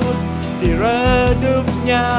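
A male singer in an Indonesian pop ballad, singing a long note with vibrato over a steady instrumental backing, then starting another line near the end.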